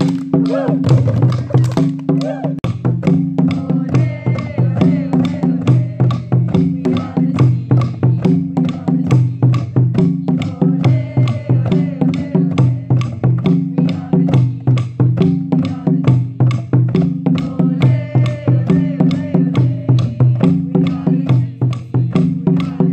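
A group of djembe hand drums played together in a steady rhythm, over backing music with a repeating bass line.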